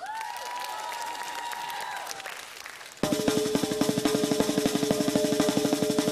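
After a brief lull holding a single rising, held tone over light crowd noise, a snare drum suddenly starts about three seconds in and plays a fast, even roll of strokes.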